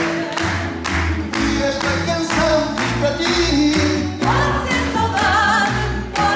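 Live fado: singing with a wide vibrato over plucked Portuguese guitar and guitar, with a low bass pulsing about twice a second. The vocal line swells and grows stronger about four seconds in.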